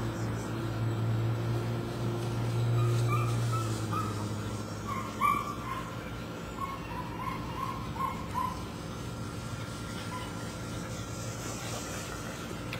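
A puppy giving a string of short, high whimpers and yips over a steady low hum that fades out about four seconds in, with a sharp click about five seconds in.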